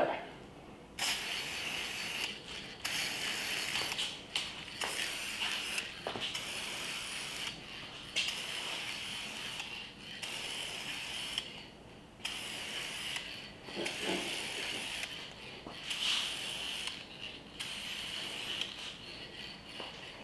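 Aerosol spray-paint can hissing in a string of bursts, each one to two seconds long with short breaks between, as a coat of paint is sprayed on.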